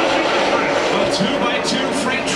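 Male race commentary over a broadcast speaker, on top of the steady drone of the pack of NASCAR Cup cars' V8 engines running around the speedway.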